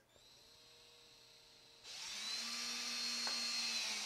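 Cordless drill driving a screw through a metal Lazy Susan bearing plate into a round board: a faint, steady motor whine at first, then about two seconds in it gets louder and runs steadily to the end, with one brief click near the end.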